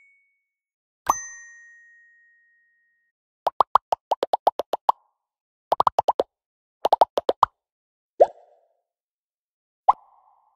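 Bubble pop sound effects: one pop with a lingering ringing tone about a second in, then quick runs of plops about seven a second in three clusters, followed by two single lower plops near the end.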